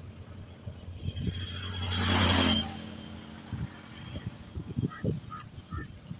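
A motor vehicle passing by on the road, swelling to its loudest about two seconds in and fading away within a second, over short low knocks of wind and rolling skate wheels on asphalt.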